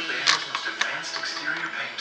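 A television in the room playing a film soundtrack: background music with voices.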